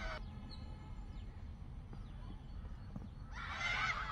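A low steady rumble. Then, a little over three seconds in, several children's voices shout together loudly in a cricket appeal.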